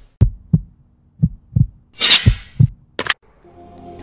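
Logo intro sound design: three pairs of deep thumps like a heartbeat, with a whoosh about two seconds in and a sharp click near three seconds. A sustained music pad swells in near the end.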